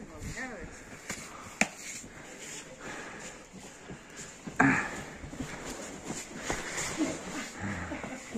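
Faint voices of people out in the snow, with a short, louder call just past halfway and a single sharp click about a second and a half in.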